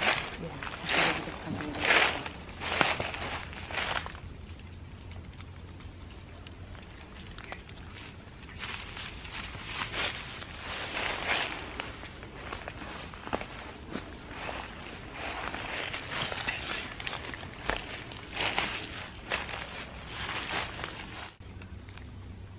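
Hushed whispering and shuffling footsteps in a dark room, in short noisy bursts with a quiet stretch between about 4 and 8 seconds in, over a low steady hum.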